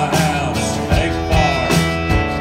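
Live country-rock band playing an instrumental stretch: electric and acoustic guitars over a steady drum beat, with a lead line of bending notes.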